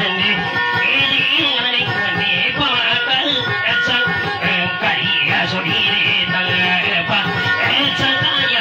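Miked steel-string acoustic guitar played in a steady rhythm, plucked notes over a regular bass line.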